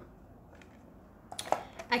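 A few light clicks and crackles of a clear plastic clamshell wax-bar pack being handled, coming in the second half after a quiet first second.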